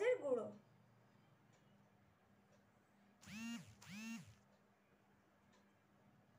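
Two short whining calls about half a second apart, each rising then falling in pitch: an animal's whine, heard over a faint steady hum.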